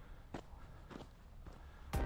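Footsteps of a person walking outdoors: three steps a little over half a second apart. Loud music cuts in suddenly right at the end.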